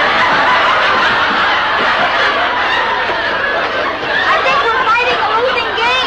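Studio audience laughing: a dense, loud wave of laughter for the first three seconds or so that thins into scattered laughs.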